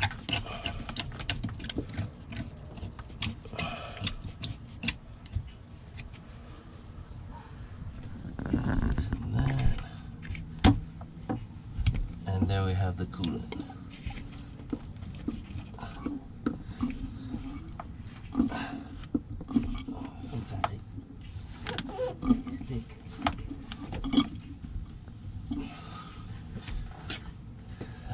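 Scattered clicks, knocks and scrapes of hand-tool work: a screwdriver loosening a hose clamp on the heater core hoses, and the rubber hoses being worked loose by hand.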